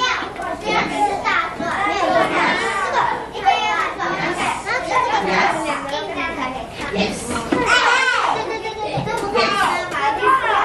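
Many children talking over one another in a classroom, a continuous babble of high young voices with no single speaker standing out.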